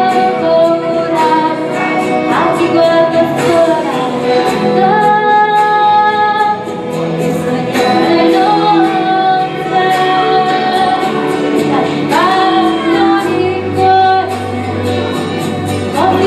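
A woman singing a song over backing music, holding long notes with sliding pitches.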